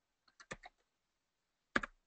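Keystrokes on a computer keyboard, typing numbers into Photoshop's RGB colour fields: a few light taps about half a second in and a louder pair of keystrokes near the end.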